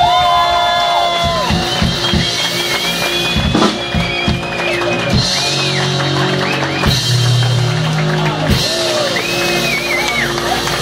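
Live rock band playing on a club stage: drum kit and electric guitars. A held chord rings through the first second or so, then gives way to loose, scattered drum hits.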